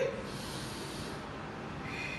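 A woman's audible breath through the nose, a soft hiss lasting about a second, over steady faint room hiss.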